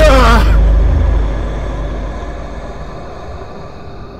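Jump-scare sound effect: a sudden loud hit with a shrill, wavering cry falling in pitch over a deep boom, dying away into a low rumble over the next few seconds.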